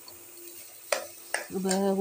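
Metal spoon stirring rice and vegetables frying in an aluminium pressure cooker: a faint steady sizzling hiss, then two sharp knocks of the spoon against the pot about a second in. A voice starts speaking near the end.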